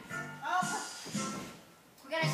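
Music with a sung voice, dropping away near the end.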